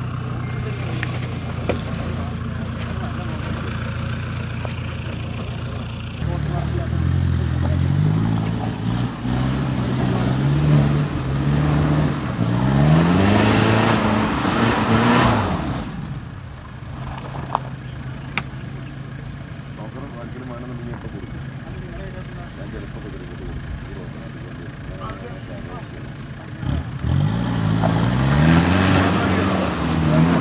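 Mitsubishi Pajero SFX's engine working through mud: it runs steadily, then revs up in several rising pulls and drops back. It settles to a steady run and revs up again near the end.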